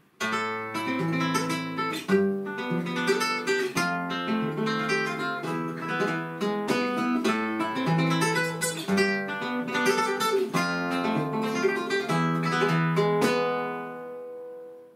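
Flamenco guitar playing a soleá falseta: a steady flow of plucked notes over low bass notes, with a few sharper accented strokes, ending near the end on a chord left to ring out.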